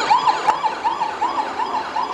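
A siren sound in a fast yelp, its pitch rising and falling about four times a second, with a sharp click about half a second in.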